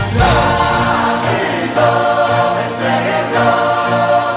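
Music: a choir singing a Christmas carol in long, held notes.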